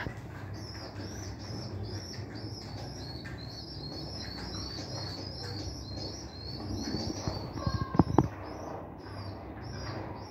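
Pigeon squabs begging as a parent feeds them: a rapid, rhythmic run of high squeaks, several a second, with wings flapping. A few sharp knocks about eight seconds in are the loudest sounds.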